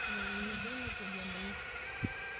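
Steady high-pitched electric whine from the motors of a 1/12-scale radio-controlled Cat 345D excavator as it swings its raised bucket round, with people talking over it.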